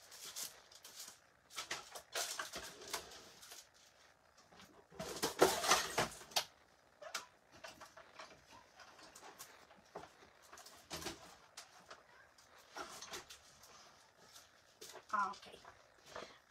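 Irregular rustling and knocking of craft supplies being handled and searched through, in short bursts, loudest about five to six seconds in.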